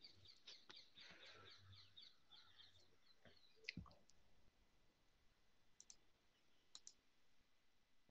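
Near silence on a video call, with faint quick clicks at about six a second for the first three seconds, then a few scattered single clicks.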